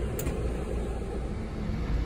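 Steady low rumble of a vehicle heard from inside the cabin, with one short click near the start.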